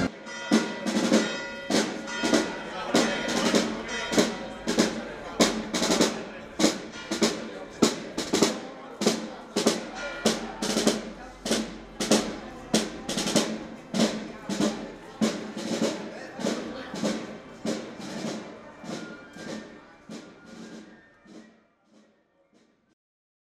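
Marching band's drums beating a steady march rhythm, about two strokes a second, with brass faintly held underneath. The music fades out over the last several seconds.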